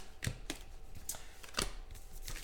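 A few light clicks and taps of trading cards being handled and set down on a table, the loudest about one and a half seconds in.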